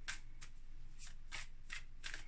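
A tarot deck being shuffled hand over hand, with several soft papery slaps of cards sliding and dropping into place.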